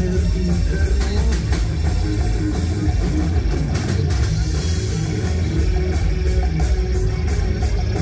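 Live rock band playing loud through a club PA: electric guitars, bass guitar and drum kit, with heavy bass and, from partway through, steady evenly spaced cymbal hits.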